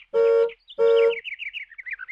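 Cartoon intro sound effects: two short, loud horn-like honks, then a quick run of about eight tweeting chirps that step down in pitch.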